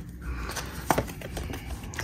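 A deck of oracle cards being shuffled and handled in the hands: soft card clicks and rustle, with a sharper snap of cards about a second in.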